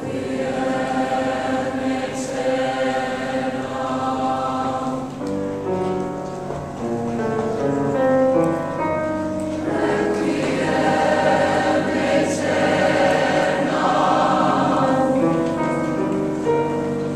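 Mixed-voice high-school choir singing the opening movement of a Requiem Mass setting, holding sustained chords that swell louder about ten seconds in.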